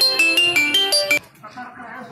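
An electronic ringtone melody of short, quick notes, about five or six a second, that cuts off suddenly a little over a second in. Faint voices of people are heard after it.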